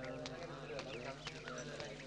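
Faint scattered footsteps, with quiet voices in the background.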